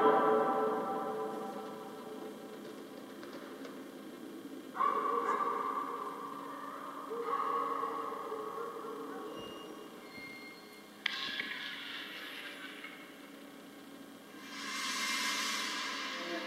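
Ambient soundtrack of a projected animation playing over a hall's speakers: sustained, steady tones, with new tones entering sharply about five and eleven seconds in and a swell with a hiss near the end.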